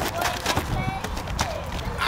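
Outdoor pickup basketball: scattered footfalls and short knocks on the asphalt court, with indistinct players' voices.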